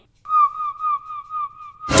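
A high whistle held on one steady note with a slight wavering, about a second and a half long, cut off as a man's voice comes in near the end.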